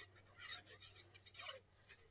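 Faint, brief scratching of a pen tip drawing lines across the back of a paper cutout.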